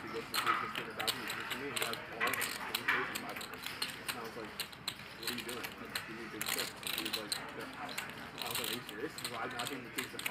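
Clay poker chips clicking against each other as they are handled and riffled at the table, with quick clicks all through, under faint table talk.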